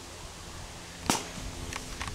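A single sharp smack about a second in: a plastic wiffle ball bat hitting a plastic ball pit ball.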